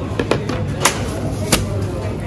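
A thin plastic produce bag pulled off a dispenser roll and handled, with a few sharp crackling snaps, the loudest about one and a half seconds in.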